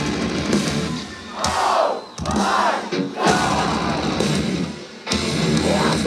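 Live metalcore band playing loudly. About a second in, the heavy instruments drop out and shouted voices are left on their own. The full band comes crashing back in near the end.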